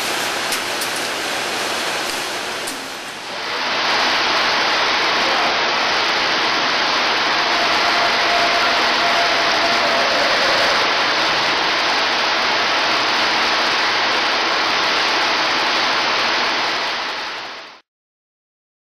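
Loud, steady rushing hiss with no rhythm or tone, starting about three seconds in after quieter clattery noise with a few clicks, and fading out at the very end.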